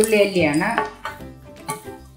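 A voice speaking for about the first second, then shallots and curry leaves sizzling faintly in oil in a nonstick frying pan, with a light click near the end.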